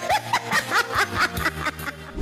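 A woman laughing into a microphone in a quick, even string of "ha ha ha" bursts, about four a second, over music.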